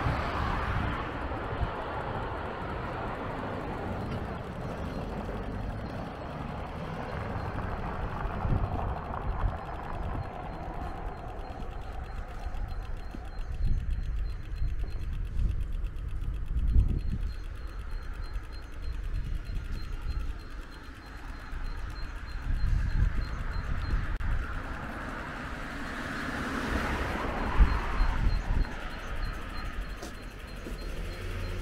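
Street ambience on a walk: a car passes near the start and another swells past near the end. Low, gusty wind rumble on the microphone comes and goes throughout.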